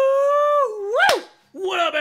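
A man's howl: one long held high note, then a quick swooping whoop that rises and falls about a second in.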